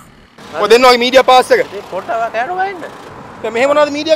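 Speech: a voice talking loudly in short phrases, after a brief pause at the start.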